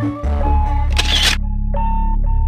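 Music, then a short camera-shutter click sound effect about a second in. It is followed by quieter, sparse background music: spaced held notes over a steady low drone.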